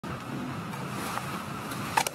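Courtroom room tone: a steady hiss of air handling with a faint murmur of the room, and one sharp click near the end.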